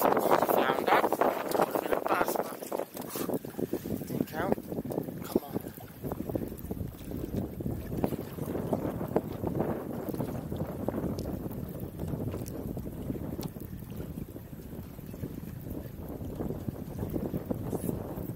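Wind buffeting the microphone on a small inflatable boat, a steady rough rush, with indistinct voices in the first few seconds.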